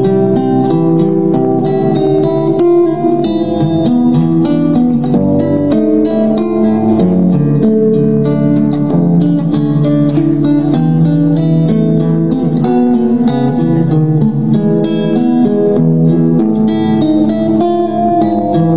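Solo acoustic guitar played fingerstyle: a continuous flow of plucked notes, with bass notes under a higher melody.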